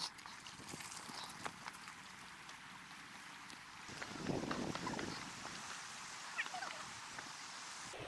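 Faint footsteps of people walking on a woodland dirt trail strewn with dry leaves, a few soft steps and scuffs over a quiet outdoor background.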